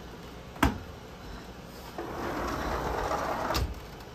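A sharp knock, then a rolling scrape lasting about a second and a half that ends in another knock: a sliding glass door being slid shut.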